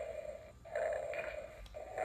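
Outdoor insects buzzing in a steady drone that dips briefly about half a second in and again near the end.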